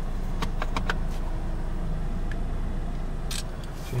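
Steady low hum inside a car's cabin, with a few light clicks in the first second and a short burst of rustling noise near the end.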